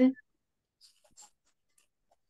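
A spoken word cuts off at the very start, then near quiet with a few faint, short clicks or scratchy ticks about a second in.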